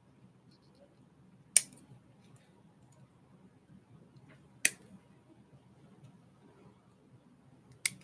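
Hobby side-cutters (nippers) snipping a plastic model-kit part off its runner: three sharp, separate clicks, the first about a second and a half in, one near the middle, and one just before the end.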